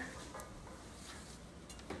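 Quiet kitchen room tone with a few faint light clicks, the sharpest near the end.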